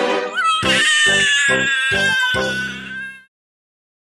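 Cartoon kitten character's long, drawn-out cry, sliding up at the start and then held high, with music pulsing beneath it about twice a second. It cuts off suddenly a little after three seconds in.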